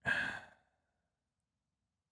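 A person's short breathy sigh, lasting about half a second at the very start.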